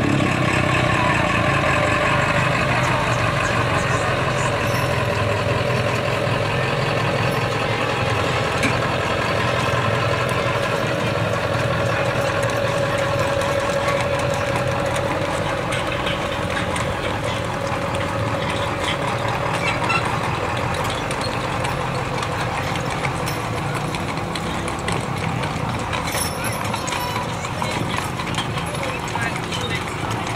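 Mules and horses clip-clopping along a paved street, mixed with people talking and a steady low hum of a vehicle engine running.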